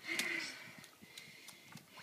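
A single breathy sigh just after the start, followed by faint small clicks.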